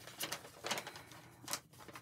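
Paper and cardboard packaging handled on a table: three short bursts of rustling and crinkling with light clicks.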